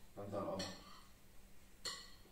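A brief low vocal hum in the first second, then a single sharp clink of a metal spoon against a plate or jar near the end, ringing briefly.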